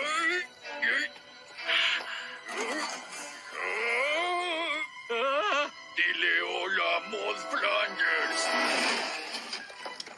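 Cartoon soundtrack: music under a man's wavering, strained vocal cries as a character heaves a boulder overhead.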